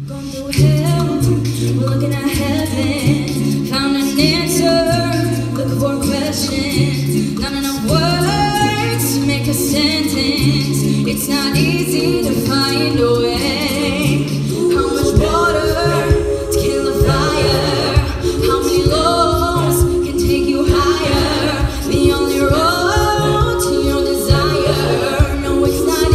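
Mixed-voice a cappella group singing live through microphones and a PA. A low sung bass line steps between notes under layered harmonies, with sharp vocal-percussion clicks throughout. About halfway through, a female soloist takes the lead.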